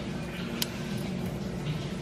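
Steel feeler gauge being tried between a 2JZ camshaft lobe and its valve bucket to check lash, with one faint click about half a second in, over a steady low hum. The 0.011 in blade will not go in, so the clearance on this valve is under eleven thou.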